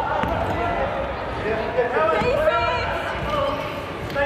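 Basketball being dribbled on a hardwood court, its bounces echoing in a large sports hall, with players calling out indistinctly about halfway through.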